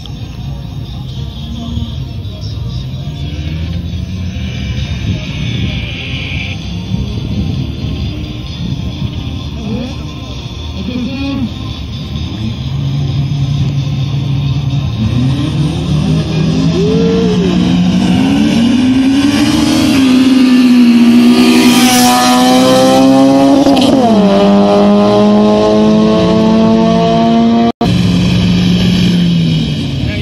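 Car engine revving up at a drag-race launch, its pitch climbing over several seconds and held at high revs with the wheels spinning on the wet road, then dropping a step and holding again near the end.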